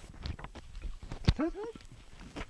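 Sharp wooden knocks and clatter as an ox yoke is fitted onto a pair of oxen, the loudest knock a little past halfway, followed by a couple of short voice-like calls that rise and fall in pitch.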